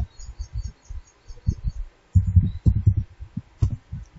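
Keyboard typing: irregular clusters of short, dull key thuds, with a few sharper clicks in the second half, as a value is deleted and retyped.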